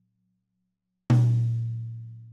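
An unmuffled Pearl Masters Custom maple drum struck once with a stick about a second in. It rings wide open with a deep tone and overtones that fade slowly.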